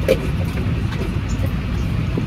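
Steady low rumble of airliner cabin noise, the hum of the aircraft's air and engine systems heard from a passenger seat.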